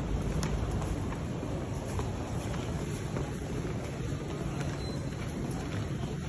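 Steady low rumble of wind noise on a handheld camera microphone while walking, over the general din of a crowded shopping arcade, with a few faint ticks.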